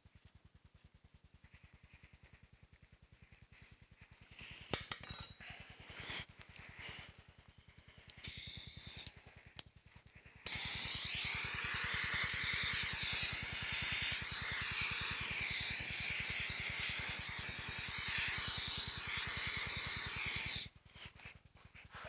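Compressed-air blow gun hissing steadily for about ten seconds, starting suddenly about halfway through and cutting off near the end, blowing loose sand out of a petrobond casting mould. Before it, a few faint scrapes and light knocks of a hand tool cutting into the sand.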